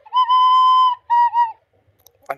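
Recorder playing a slow melody: one long held high note, then two short notes, after which the playing stops shortly before the end.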